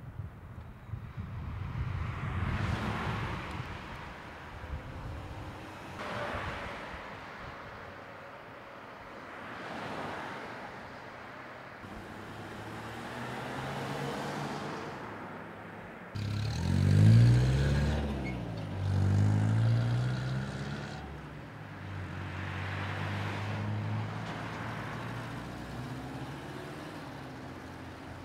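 Cars passing through an intersection one after another, each a swell of tyre and engine noise that rises and fades. About halfway through, a louder vehicle accelerates close by, its engine note climbing, dropping and climbing again.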